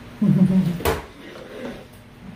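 A brief low vocal sound from a person, like a short hum, cut by a single sharp click just under a second in, then faint murmuring.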